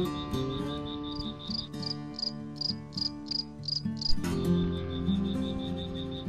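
Crickets chirping: a steady, rapid high pulsing trill, joined in the middle by a higher chirp repeating about three times a second, over soft guitar background music.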